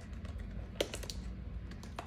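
Light clicks and paper flicking as fingers leaf through envelopes packed in a clear plastic box, with one sharper click about a second in.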